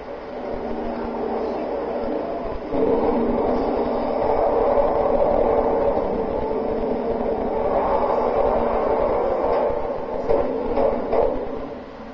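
A cartoon fire truck's heavy engine running loudly, jumping louder about three seconds in as it charges, with a few sharp knocks of impact near the end.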